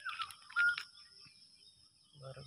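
A few short, high chirps from a bird: a falling one at the start, then a brief, sharper one about half a second in. A steady, high-pitched insect drone runs underneath.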